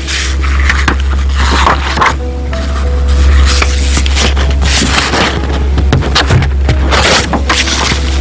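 Paper rubbing and rustling as a hand slides over and turns the page of a picture book close to the microphone, over a steady low hum.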